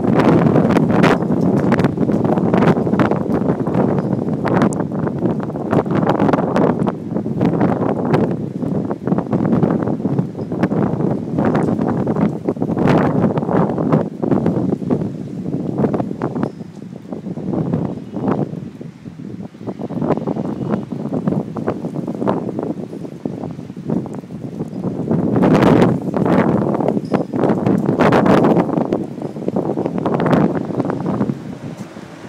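Gusty storm wind buffeting the phone's microphone, rising and falling, with many short crackles and a stronger gust about three-quarters of the way through.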